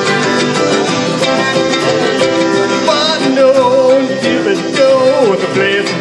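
Live country band playing an instrumental break: strummed guitars underneath, with a fiddle playing a sliding melody with vibrato, loudest around the middle.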